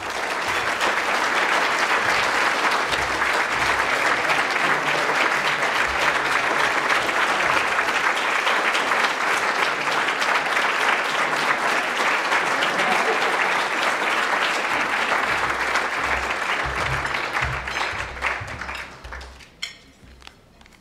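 Audience applauding: a long, steady round of clapping that dies away near the end.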